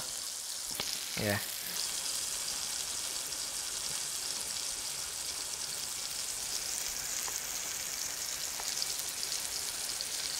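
Beef patty and potato wedges frying in hot oil on a gas stove: a steady, high sizzling hiss.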